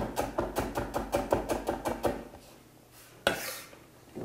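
A chef's knife taps a wooden cutting board in rapid, even strokes, about six or seven a second, as fresh ginger is sliced as thinly as possible. The chopping stops a little after two seconds, and one brief louder sound follows shortly after three seconds in.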